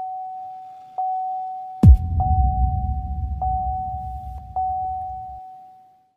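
Trailer sound effects: a steady high tone held throughout, with a few faint ticks on it. About two seconds in, one loud deep boom hits, and its low rumble sinks and dies away over the next three seconds or so.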